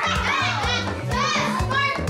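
Children's voices calling out excitedly over background music with a steady bass beat.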